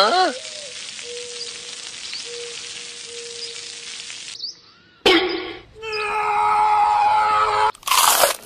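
Oil sizzling on a flat stone slab heated over a fire: a steady hiss that stops after about four seconds. About a second later comes a louder passage of pitched tones over the hiss.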